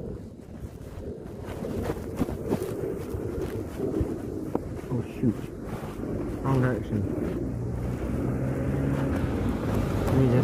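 Wind buffeting a phone microphone worn by a rider on a moving mountain bike, with a few sharp knocks and rattles from the bike as it rolls over the sidewalk and its drain grates.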